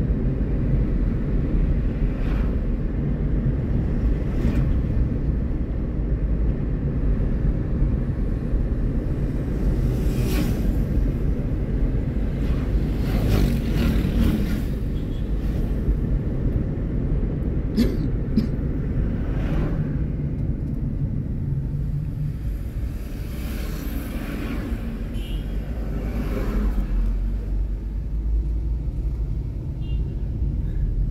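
Car driving along a city road: steady low road and engine rumble heard from inside the car, with a few brief louder rushes of noise.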